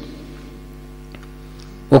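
Steady electrical mains hum, a low buzz with several even overtones, heard in a pause between spoken phrases, with one faint click about a second in.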